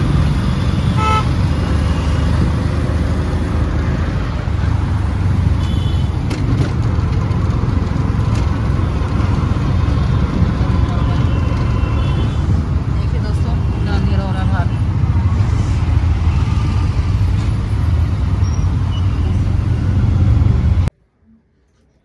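Road and engine noise heard from inside an open-sided auto-rickshaw in heavy traffic: a steady loud rumble with car and motorbike horns honking now and then. It cuts off suddenly shortly before the end.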